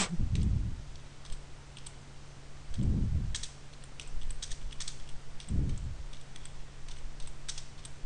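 Computer keyboard keys tapped in an uneven run as a short phrase is typed, over a steady low hum. There are a few soft low thumps: one at the start, one about three seconds in and one a little after five seconds.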